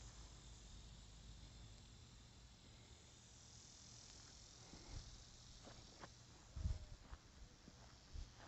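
Near-quiet outdoor air with a faint, steady high buzz of insects, and a few soft low thumps about five seconds in and again around six and a half to seven seconds in.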